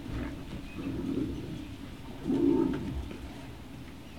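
Low, throaty animal calls: one about a second in and a louder one about two and a half seconds in.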